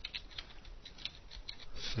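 Typing on a computer keyboard: a run of quick, uneven key clicks, about four or five a second.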